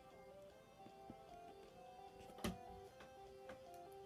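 Faint instrumental backing music with a held, slowly changing melody: the intro of the track that the song is about to be sung over. A single short knock sounds about halfway through.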